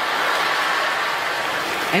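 Large theatre audience laughing and applauding in response to a punchline, a steady even wash of crowd noise.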